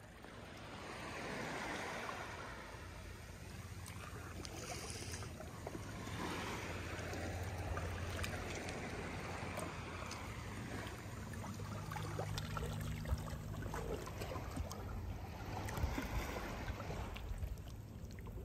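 Shallow seawater lapping and sloshing softly, rising and falling in slow swells, with a steady low hum underneath.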